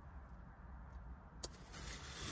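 Faint steady low rumble inside a car's cabin, with a single sharp click about a second and a half in and a rising rustling hiss near the end.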